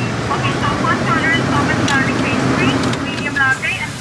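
Indistinct, unclear speech inside a car cabin, over the low steady hum of the car's idling engine.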